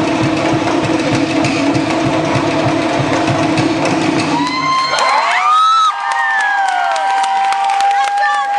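A Polynesian drum ensemble of wooden slit log drums and bass drums playing a fast rhythm, which stops about four and a half seconds in. Crowd cheering follows, with high rising yells and whistles and one long held shout.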